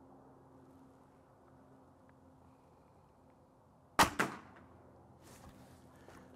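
A .22 Gamo Magnum Gen 2 break-barrel air rifle fires a single H&N slug about four seconds in: one sharp crack with a brief ring. A smaller crack follows a fraction of a second later, the slug's solid impact on a water-filled can.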